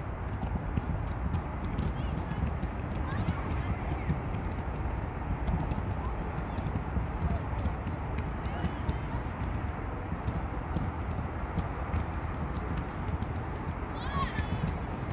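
Steady low rumble of wind on the microphone, with faint distant voices of players and spectators and scattered light clicks.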